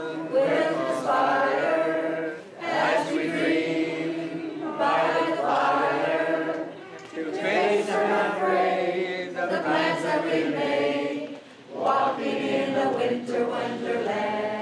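A group of voices singing a song together, in sung phrases a few seconds long with short pauses between them.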